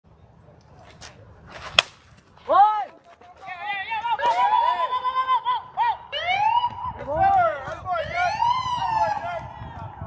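A bat strikes a baseball with a single sharp crack, followed by several voices shouting and yelling in long, rising-and-falling calls as the ground ball is fielded.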